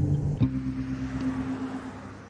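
Closing of a TV title sting: a short rhythmic run of electronic notes ends with a sharp hit about half a second in, then a single held low tone with a hiss fades away.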